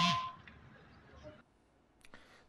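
The tail of a short two-pitch tone, cut off within the first quarter second, then faint background noise that fades into silence about three quarters of the way through.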